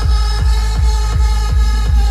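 Electronic dance music played loud through a DJ speaker tower, with heavy bass and a steady, fast kick-drum beat nearly three times a second.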